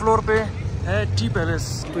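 Low steady hum of street traffic, with short calls over it whose pitch sweeps sharply up and down, several a second.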